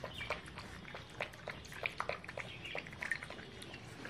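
Puppy eating: irregular sharp clicks and smacks of chewing and lapping, several a second.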